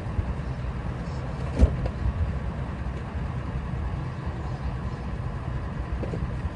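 Steady low rumble of a vehicle engine idling, with a single dull thump about a second and a half in as a cardboard box is set into the truck.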